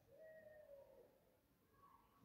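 Near silence: room tone, with a faint short tone in the first second.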